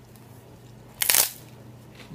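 One short, loud crunch about a second in, from a mouthful of crisp puffed cereal being bitten and chewed.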